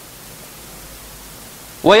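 Steady background hiss of the lecture recording, with a man's voice starting to speak near the end.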